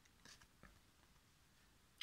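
Near silence, with a few faint short clicks and rustles of cardboard game cards being drawn and handled.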